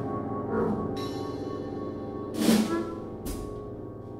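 Sparse live chamber-jazz playing by a piano, vibraphone, double bass and drums quartet: long ringing tones under a few scattered percussion strikes, the loudest about two and a half seconds in, the music slowly fading.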